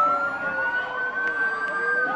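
Emergency-vehicle siren wailing, its pitch rising slowly, with a second, lower siren tone sliding down beneath it over street noise.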